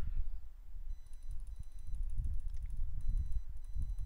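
Low, uneven background rumble with a faint high-pitched whine that comes and goes.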